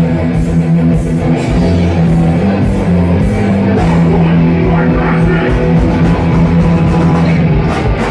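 Hardcore punk band playing live and loud: distorted electric guitars and bass chugging on held low notes over a pounding drum kit.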